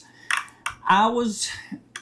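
Mostly a man's speech: a short phrase about a second in. It comes after a pause that holds two brief sharp clicks.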